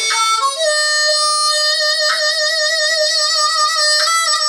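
Harmonica played blues-style with cupped hands: a few quick rising notes, then one long held note that starts to waver in a hand vibrato about halfway through and breaks off near the end.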